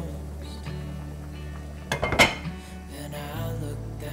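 A glass pot lid is set onto a metal cooking pot with a short clatter of clinks about two seconds in, over background music.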